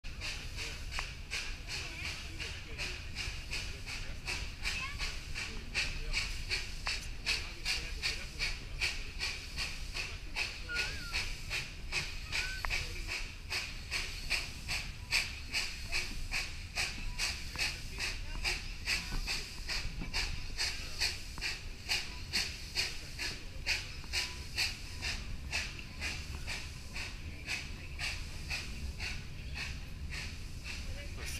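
Steam locomotive hauling the train: a steady, even run of exhaust chuffs, a few each second, with hissing steam, over a low rumble of the cars rolling on the rails.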